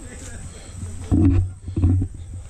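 Low rumbling noise on the microphone of a handheld camera carried at walking pace, the kind made by wind and handling, with two louder bursts about a second in and near the end.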